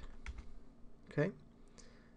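Computer keyboard keys clicking a few times as the end of a terminal command is typed and Enter is pressed, with one faint click near the end.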